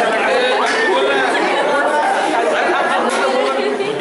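A group of young people talking at once, many voices overlapping in lively chatter.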